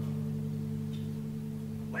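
A large hanging gong ringing on after a strike: a low, steady hum of several tones that slowly dies away.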